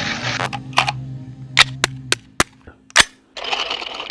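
A series of about seven sharp cracks, irregularly spaced, over a steady low hum that stops about two seconds in.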